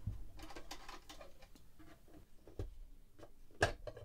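Faint, irregular clicks and taps of a small screwdriver and wrench working on the screws and connector nut of a DAC's metal back panel, with one sharper knock near the end.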